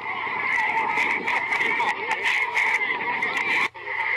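Many birds calling over one another in a dense, continuous chatter of short wavy calls, with sharp clicks scattered through it; the sound drops out briefly near the end.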